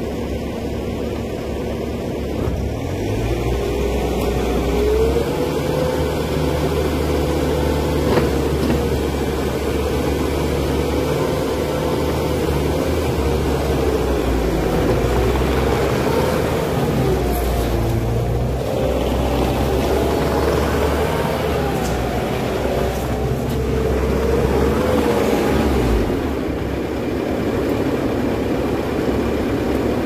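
Bobcat T740 compact track loader's 74 hp diesel engine running, picking up about three seconds in and working steadily as the machine drives and turns on its tracks, with a whine that rises and falls. The engine eases off a little near the end.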